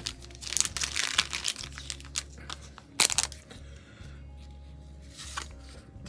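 Clear plastic wrapper of a 1990 Score baseball card pack crinkling and tearing as the pack is opened. A run of crackles fills the first couple of seconds, with one sharp crack about three seconds in, then it goes quieter over low background music.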